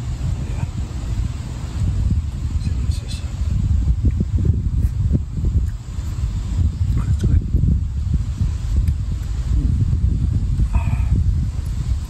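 Steady low rumble of wind on the microphone, with a few faint short knocks in the middle of it.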